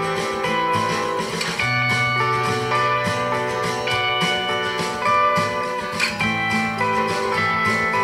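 Instrumental guitar demo playing back: a simple chord progression with a plain guitar melody doubled over the top and a very simple bass line under it.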